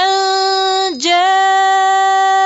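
A woman's voice chanting Quranic recitation in tajweed style, holding one long steady melodic note. It dips and breaks off briefly about a second in, then takes up the same held note again.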